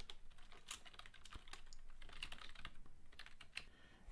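Typing on a computer keyboard: an irregular run of faint key clicks.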